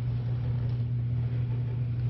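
A steady low machine hum with a faint even hiss over it.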